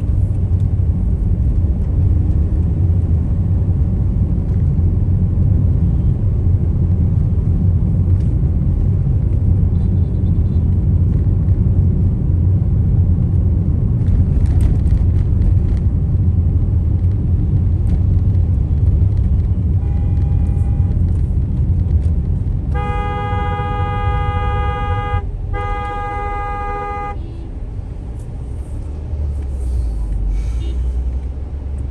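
Steady low road and engine rumble heard from inside a moving vehicle's cabin. A vehicle horn sounds over it: a short, faint honk about two-thirds of the way in, then two long blasts of about two seconds each.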